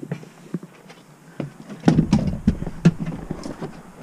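Footsteps and handheld camera handling knocks while walking, with scattered clicks. A louder, denser run of knocks and low rumble comes about two seconds in.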